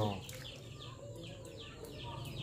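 Chicks peeping faintly, short high downward chirps repeating several times a second.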